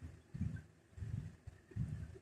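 Faint handling noise of hands working yarn with a crochet hook: soft, low bumps about every two-thirds of a second.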